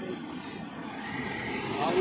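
Roadside traffic noise, a low steady rumble of passing vehicles, with faint voices and a short "aa" near the end.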